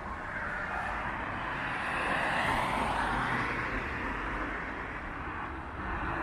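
A car passing by on the road, its tyre and engine noise swelling to a peak a couple of seconds in and then fading.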